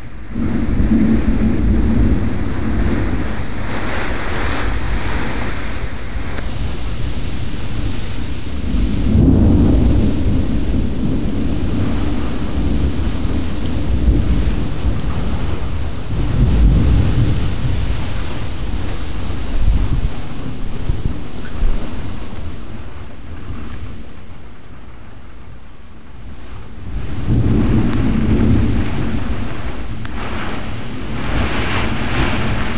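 Summer thunderstorm downpour: steady heavy rain with low rumbling thunder that swells and fades several times, with a quieter lull shortly before the end.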